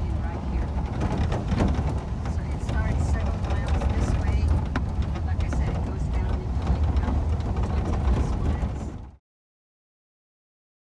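Road and engine noise of a moving truck heard from inside, a deep steady rumble with many small knocks and rattles, cutting off suddenly near the end.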